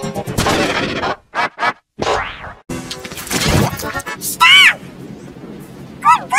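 Heavily distorted, pitch-shifted replay of a spoken film line and its background sound. Choppy noisy bursts break off in short dropouts, a falling glide follows, and about four and a half seconds in a warbling tone swoops up and down in pitch.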